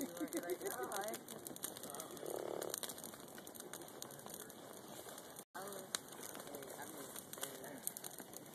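Burning wooden pallets crackling with small pops, with one sharper pop about six seconds in. Faint voices are heard during the first second and again in the last few seconds.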